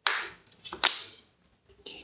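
A plastic bottle of homemade microbial starter being handled: a sudden sharp plastic sound right at the start, then a sharper click a little under a second later, each trailing off briefly.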